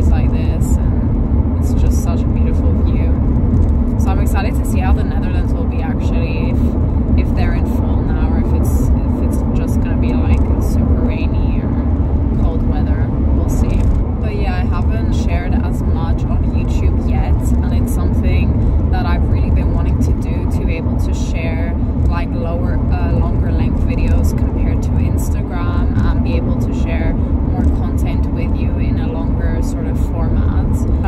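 A woman singing inside a moving car's cabin, her wavering voice over the steady low rumble of road and engine noise.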